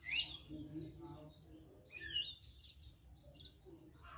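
Small birds chirping outdoors: a quick rising chirp right at the start and another short run of chirps about two seconds in, with fainter calls between, over a low steady background.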